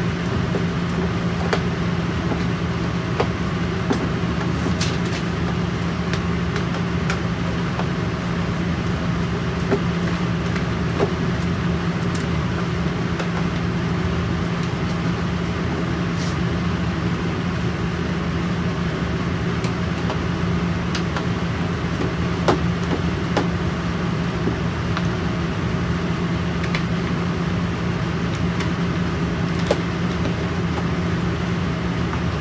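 A steady low machine hum runs throughout. Scattered light clicks and knocks come from a hand screwdriver driving screws into a flat-pack cabinet's drawer-runner mounts and from the panel being handled.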